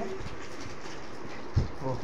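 Steady room noise with one short, low thump about one and a half seconds in, then a brief vocal sound at the very end.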